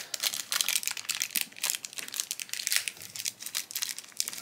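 Plastic blind-bag wrapper crinkling and crackling in the hands as it is unwrapped to free a pin, in quick irregular crackles.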